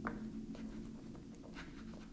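A few faint clicks and taps of fingers seating a rechargeable lithium polymer battery in the plastic battery compartment of a motorcycle GPS navigator, over a low steady hum.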